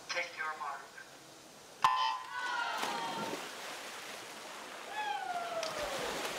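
A brief starter's command over the pool loudspeaker, then the electronic start signal goes off sharply about two seconds in. Swimmers diving in and splashing follow, with a wash of crowd noise that carries on to the end.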